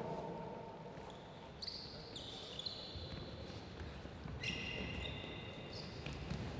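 Sports shoes squeaking on a wooden hall floor: a few short, high squeaks, then a longer one about two-thirds of the way in that lasts over a second.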